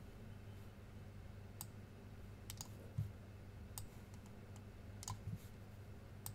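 A few faint, irregular clicks from a computer mouse, spread over several seconds, over a low steady hum.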